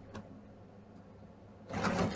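Mostly a quiet room, with a faint click just after the start and a brief scratchy rustle of coloring on paper near the end.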